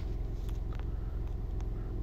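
A steady low background hum or rumble, with a few faint clicks.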